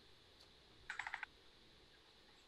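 Computer keyboard keystrokes: a quick run of about six faint key taps about a second in, entering a number into a calculator.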